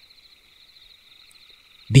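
Faint background chorus of night insects, a steady high trill with a fast pulse; a voice starts just at the end.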